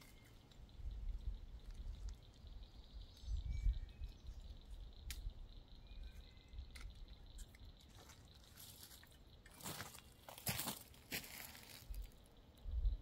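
Faint rustling and crunching of undergrowth underfoot on a pond bank, loudest in a few short bursts near the end, over a low rumble.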